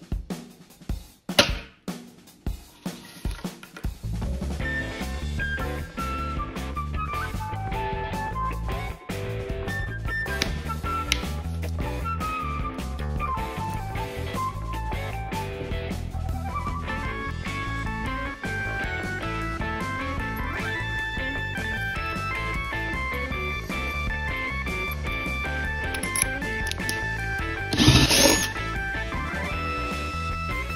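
Background music with a steady bass and a stepping melody. A few sharp clicks and knocks come in the first seconds, and one loud, brief burst of noise comes near the end.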